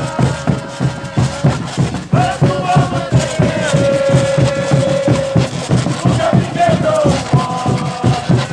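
Congo band music: drums and casaca scrapers keep a steady beat while a group of women sing a chant with long held notes.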